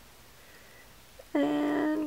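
A short vocal sound, held at one steady pitch for under a second, starting about a second and a half in after near-quiet.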